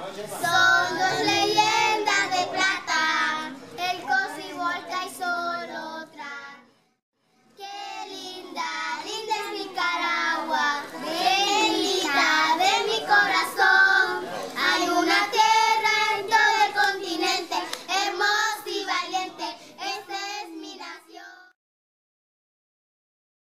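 A group of children singing a song together in Spanish. The singing breaks off briefly about seven seconds in, then resumes and stops shortly before the end.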